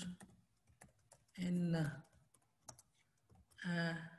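Typing on a computer keyboard: quick, irregular key clicks as a line of code is entered.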